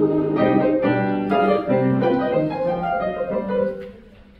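Grand piano playing a passage of choral rehearsal music in steady chords and held notes, which stops just before the end.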